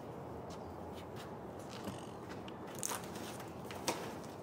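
Faint scattered taps and rustles of books and papers being gathered up off a concrete walkway, over a steady background hiss, with the clearest taps near the end.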